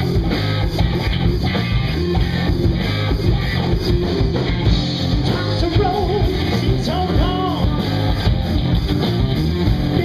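Live rock band playing loud and steady: electric guitar, electric bass and drum kit.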